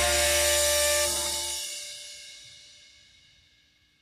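A live pop-rock band's held chord ringing out, with cymbal wash over it. The bass stops about a second and a half in, and the rest fades away to silence over the next two seconds.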